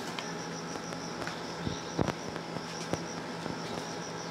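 Outdoor ambience of insects, a steady high-pitched buzzing or chirring, over a low steady hum. A few light knocks stand out, the loudest about halfway through and another a second later.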